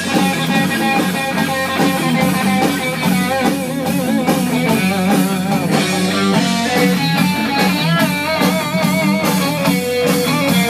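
Stratocaster-style electric guitar played loud and distorted in a heavy rock style, with bent, wavering lead notes from a few seconds in.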